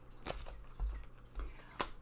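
Tarot cards being handled on a wooden tabletop: a few faint, light clicks, the sharpest near the end as a card is laid down.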